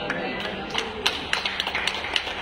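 A run of sharp taps on a hard surface, sparse at first and coming faster toward the end, several a second.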